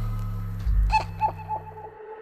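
Sped-up electronic pop intro: a held low synth chord slowly fading, with a short run of swooping, downward-bending notes about a second in. The low chord cuts off at the very end.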